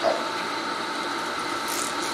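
Steady hissing room noise picked up through a handheld microphone during a pause in speech, with a short rustle near the end.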